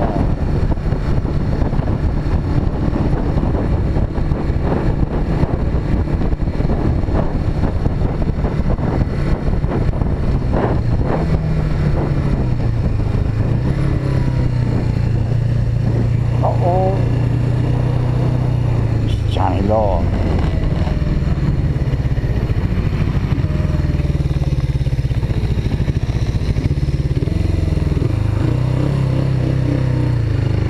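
Suzuki GS500E parallel-twin engine running while the bike is ridden, heard with wind noise rushing over the microphone. After the middle the wind eases and the engine's steady low hum stands out as the bike slows.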